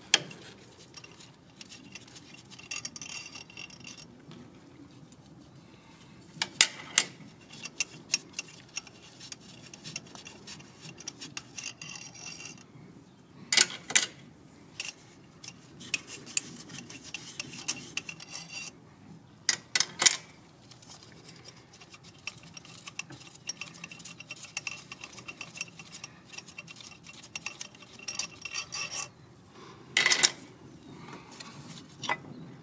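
Hand ratchet clicking in short runs as the external Torx bolts holding a BMW B58 engine's fuel rail are backed out. A few sharp metallic clicks of socket and tools stand out, spaced several seconds apart.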